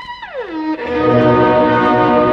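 Violin concerto music: a held violin note slides down in pitch, then a fuller, louder string and orchestral passage comes in and holds.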